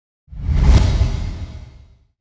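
A whoosh sound effect: a deep rushing swell that starts about a quarter second in, peaks just before the one-second mark and fades away.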